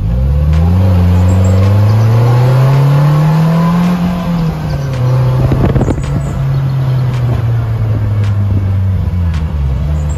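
Polaris Slingshot engine accelerating, its pitch rising smoothly for about four seconds, easing off and then holding steady at a cruise. Near the end the pitch drops briefly and climbs again. About halfway through there is a short burst of rough buffeting.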